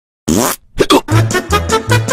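A short sliding sound effect and two quick hits, then an upbeat intro jingle with a steady beat and a repeating bass note starts about a second in.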